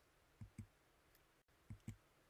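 Near silence between spoken lines, broken by two faint pairs of soft, low clicks: one pair about half a second in, the other near the end.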